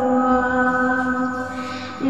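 Slowed, reverb-heavy lofi song: a woman's voice holds one long sung note over the music, fading near the end.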